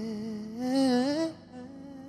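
End of a recorded song: a solo voice hums a wavering, vibrato-laden closing phrase that rises in pitch about a second in, then gives way to a faint sustained tone as the track fades.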